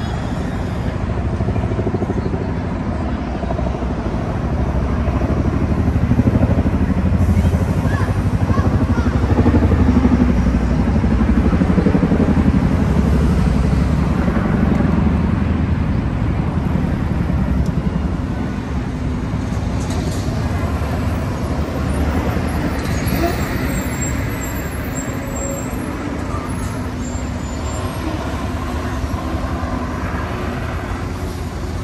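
Busy city road traffic: buses, cars and lorries passing with a steady low rumble that grows louder for several seconds in the middle, then eases.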